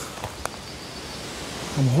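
A faint, steady outdoor hiss with two soft clicks shortly after the start, then a man's voice coming in near the end.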